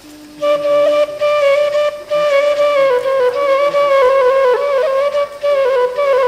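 Background music: a flute playing long held notes with slight bends in pitch, coming in about half a second in.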